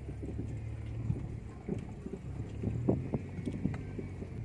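Car engine running with a steady low hum heard from inside the cabin, with irregular knocks and rattles as the car jolts over a rough, unpaved road.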